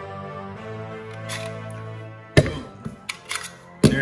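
Background music that stops about two seconds in, followed by two loud, sharp impacts about a second and a half apart with a few smaller clicks between them.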